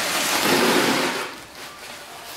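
A plastic sack rustling, with the hiss of coarse salt, as a hand digs into the sack and scoops out salt for a raw beaver hide; the noise is loudest in the first second or so, then dies away.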